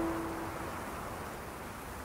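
A piano note fading out during a pause in slow piano music, leaving a steady hiss.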